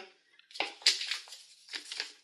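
A sheet of paper rustling and crackling as it is picked up and handled, starting about half a second in, with a second flurry near the end.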